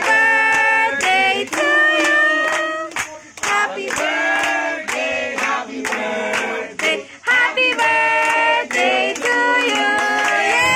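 Children singing a song together, clapping along in a steady beat of about two claps a second.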